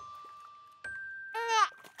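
Cartoon soundtrack cue of held electronic tones, each a little higher than the one before. About one and a half seconds in, a short high sound slides down in pitch.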